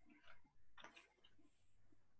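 Near silence over an open video call, with a few faint, brief sounds about a third of a second and about a second in.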